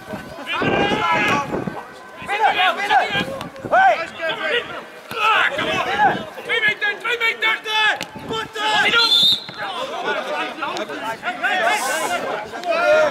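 Men's voices calling out and talking during a football match, players and spectators overlapping, with a short high rising note about nine seconds in.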